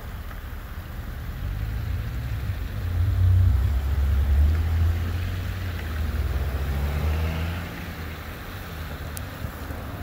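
Low rumble of an approaching diesel freight locomotive. It swells a couple of seconds in, is loudest around the middle, and eases again near the end.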